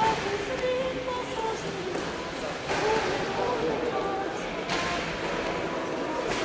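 Indistinct voices murmuring in a large gym hall, with two brief rustles about three and five seconds in.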